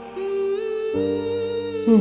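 Background score: a humming voice holding long notes over sustained accompaniment, shifting to new notes about a second in and again near the end.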